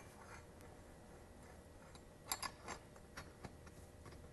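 A few faint, sharp clicks and taps of metal lighting hardware: a shoe-mount bracket with a flash and receiver being fitted onto a softbox connector. The clicks come in a small cluster a little past halfway.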